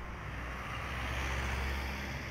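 Street traffic with a vehicle passing close by: a steady low engine rumble and tyre noise that swells slightly about a second and a half in.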